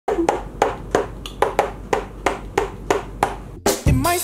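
Sharp hand strikes in a steady rhythm, about three a second, each with a brief hollow ring. Music starts just before the end.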